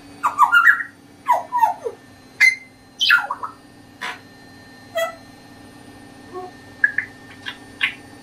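African grey parrot calling in a string of about ten short whistles, clicks and squawks, several of them falling in pitch, the loudest in the first two seconds.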